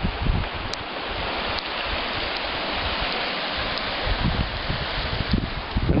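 Teklanika River, fast-moving and powerful, rushing steadily past its stony bank, with gusts of wind buffeting the microphone now and then.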